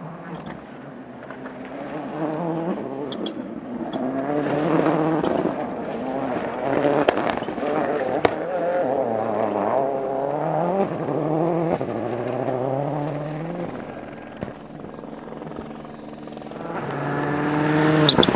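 Ford Focus RS WRC rally car's turbocharged four-cylinder engine revving hard, its pitch repeatedly climbing and dropping through gear changes and lifts. It grows loudest near the end as the car comes close.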